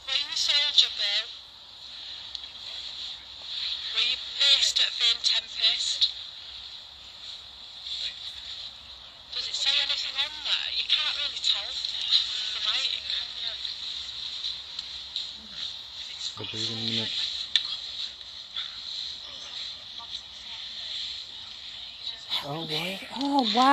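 Olympus VN-711PC digital voice recorder playing back an EVP session recording through its small built-in speaker: thin, tinny voices from the recording in several short stretches, with gaps between.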